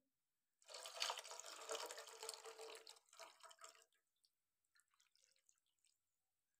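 Water poured off a bowl of washed meat pieces into a pan, splashing for about three seconds, then a few faint drips: the rinse water being drained from the meat.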